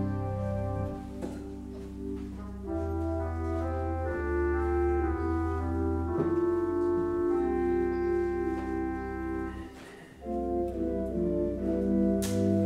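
Church organ playing slow, sustained chords over deep pedal bass notes, the harmony shifting every second or so. The sound thins to a brief lull near the end, then a fuller chord comes back in.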